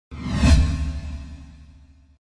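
Intro logo whoosh sound effect with a deep low rumble, swelling to its peak about half a second in and then fading away over about a second and a half.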